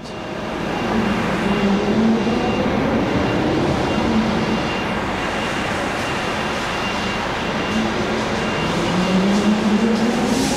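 Articulated lorry's diesel engine running while the lorry creeps forward at low speed, its note rising and falling a few times and climbing again near the end.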